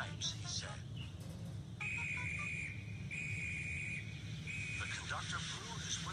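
A whistle blown three times: two steady high blasts of about a second each, then a shorter third one, over a constant low hum.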